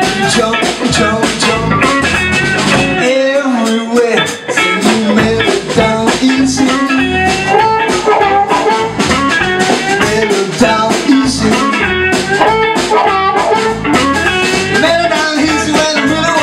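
Live blues band playing, with electric guitar and upright double bass.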